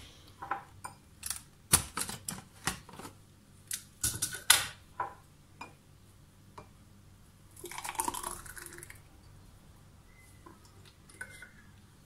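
Clicks and knocks of a plastic personal blender bottle being opened and handled on a countertop, then a thick green parsley smoothie poured from the bottle into a glass for about a second and a half past the middle.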